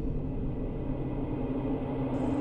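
A low, steady rumbling drone with held low hums beneath it.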